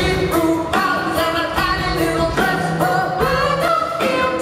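Live rock band playing with a sung vocal line over guitars, keyboards and drums, heard from the audience in a concert hall.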